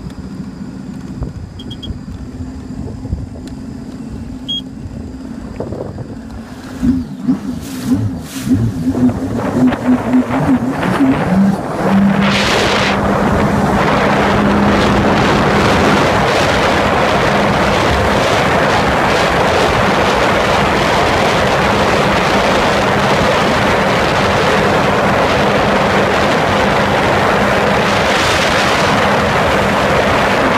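Sea-Doo RXT-X 260 RS jet ski's supercharged Rotax three-cylinder engine idling low and steady, then surging in uneven bursts about seven seconds in as the throttle opens. From about twelve seconds it runs steadily at speed under a loud rush of water and wind.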